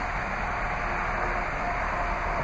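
Steady hiss and hum of a 2013 Jeep Grand Cherokee sitting at idle with its climate fan blowing, heard through the open driver's door.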